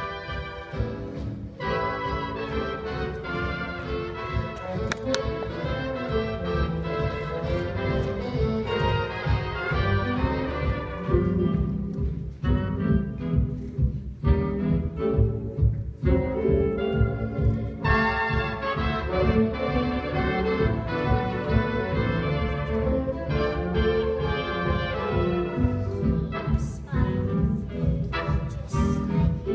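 Orchestral music with strings.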